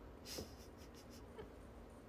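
Near-quiet room tone, with one brief faint hiss-like noise about a third of a second in.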